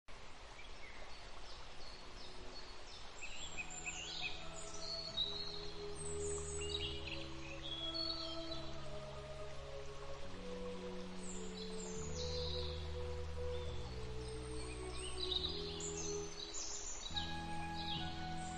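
Birds chirping, joined about three seconds in by slow ambient music of held low chords that change every second or two, with the birdsong continuing over it.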